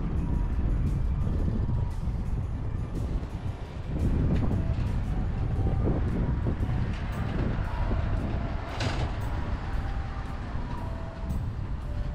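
City road traffic: cars and trucks passing on the road beside the walker, a steady low rumble that grows louder about four seconds in.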